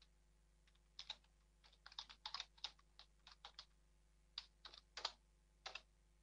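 Typing on a computer keyboard: faint, irregular key clicks in quick runs, starting about a second in.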